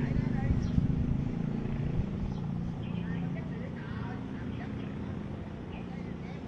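Electric hair clippers running with a steady buzz while cutting a taper fade at the nape; the buzz slowly grows quieter.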